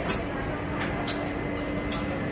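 Indoor market hall background noise: a steady low hum over a general murmur, with a few short clicks.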